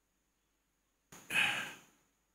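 Near silence, then about a second in a man sighs: a single short, breathy exhale, heard close on a handheld microphone.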